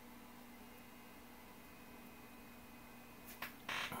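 Quiet room tone with a faint steady hum, and a short burst of noise near the end.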